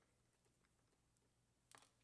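Near silence: room tone, with one faint brief tick near the end.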